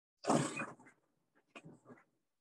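Chalk strokes on a blackboard as circles are drawn: a loud scratchy stroke about a quarter second in and a softer one near the end.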